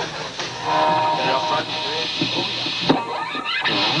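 Electric guitar played through an amplifier, starting up: a note held for about a second, then shorter notes, with a sharp hit near the three-second mark.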